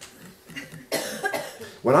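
A single cough about a second in, starting abruptly and trailing off.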